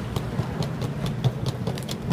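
Small hard-shell suitcase's wheels rolling over stone paving slabs: a steady low rumble with irregular clicks.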